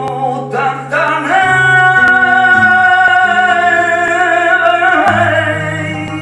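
Male flamenco singer in a cante de las minas, sliding up into one long, wavering held note over flamenco guitar accompaniment; the note ends about five seconds in while the guitar plays on.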